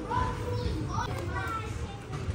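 Indistinct voices of other shoppers, some high-pitched, over in-store background music.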